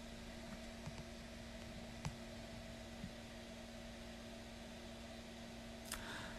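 Quiet car-cabin room tone: a faint steady hiss with a low hum, and a small click about two seconds in.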